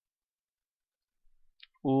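Near silence, broken by a single faint click about a second and a half in; a man's drawn-out spoken vowel begins near the end.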